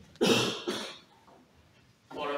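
A man coughing twice: a sharp cough, then a smaller one about half a second later.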